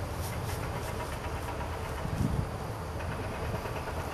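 Wind rumbling on the camera microphone, steady and uneven, with a stronger gust about two seconds in.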